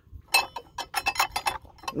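A quick, irregular run of sharp metallic clicks and ticks, starting about a third of a second in, from a hand working at a small outboard motor's exposed flywheel and starter ring gear, where something is stuck that won't come off.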